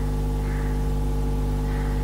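Steady electrical mains hum: a continuous low buzz made of several even, unchanging tones.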